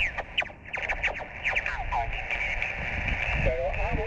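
Icom IC-703 HF transceiver receiving on the 20-meter band through a small external speaker: band hiss with fragments of sideband voices and short falling whistles as the radio is tuned across stations. A clearer voice comes through near the end.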